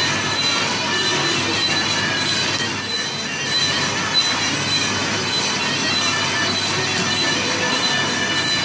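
Machinery running steadily, with a continuous high metallic squeal made of several held tones over a dense rumble.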